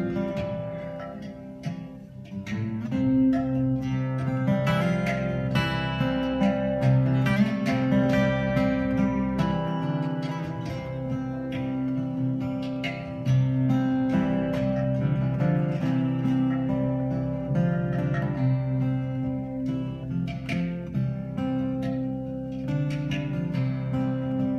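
Live instrumental music: acoustic guitar playing with hand percussion, clay pot and barrel drum. There is a short dip in loudness about two seconds in, then fuller playing.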